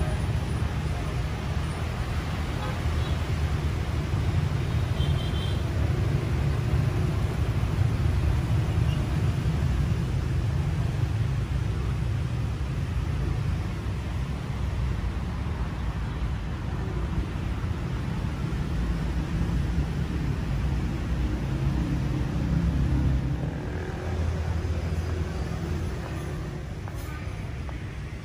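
Steady low outdoor rumble that goes on throughout.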